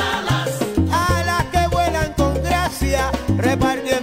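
Salsa band playing a passage without lead vocals: sustained bass notes, steady percussion and a melody line that bends and wavers in pitch above them.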